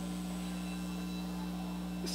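Steady electrical hum made of a few low, unchanging tones.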